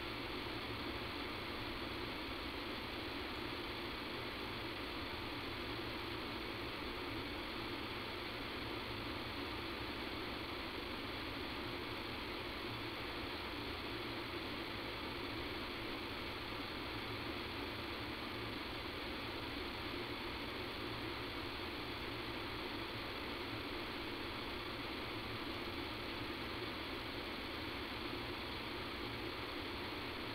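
Steady, unchanging hiss and hum of line noise on a telephone conference-call recording, with nothing else heard. It is the sign of a fault in the recording's sound quality, whose cause the uploader does not know.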